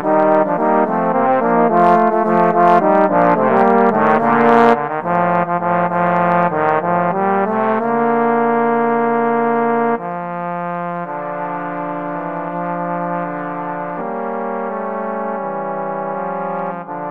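Three trombones playing a sea-shanty arrangement: brisk, short repeated notes in all three parts, changing about eight seconds in to long held chords that turn softer at about ten seconds.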